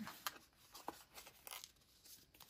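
Faint rustling and light scuffs of a folded paper pocket being handled and pressed into shape.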